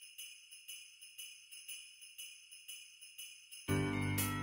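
Sleigh bells shaken in a steady beat, about four shakes a second, as the opening of a music track. Fuller music with low notes comes in near the end.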